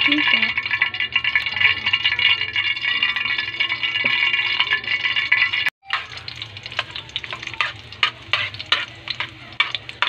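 Hot cooking oil sizzling in a metal frying pan, loud and steady at first. After a brief break about halfway, a quieter sizzle as chopped garlic fries, with a metal spoon repeatedly scraping and clicking against the pan as it is stirred.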